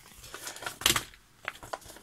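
A paper envelope being handled and its contents taken out: a run of short paper rustles and taps, the loudest about a second in.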